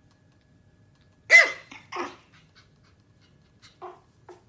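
Small fluffy dog barking: one sharp, loud bark about a second in, a second shorter bark just after, and a faint short sound near the end.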